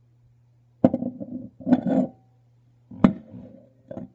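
Knocks and clatter of a glass measuring cup against a metal worm mold at the end of a pour of melted soft-plastic: a second-long run of clinks and rattles starting about a second in, then a single sharp knock near the end.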